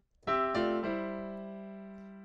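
Piano: after a brief silence, a few notes and chords are struck in quick succession about a quarter second in, then held and left ringing, slowly fading.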